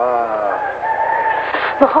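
A rooster crowing once, its call ending in a long held note.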